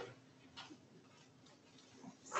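Near silence: room tone in a pause between speech, with one faint, brief sound about half a second in.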